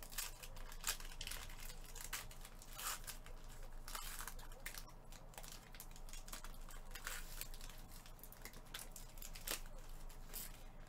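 Foil trading-card pack wrapper crinkling and tearing as it is slit open with a blade and pulled apart, with repeated sharp crackles. A faint steady low hum lies underneath.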